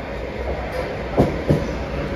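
Renfe commuter train pulling in alongside the platform, a steady low rumble of the moving train.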